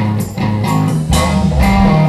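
Live rock band playing loud, distorted electric guitars over bass notes and steady drum hits.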